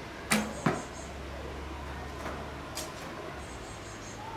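Wooden longbow shot: the bowstring snaps on release with a brief low twang, and a second sharp knock follows about a third of a second later. A fainter click comes near the end, over a steady low rumble.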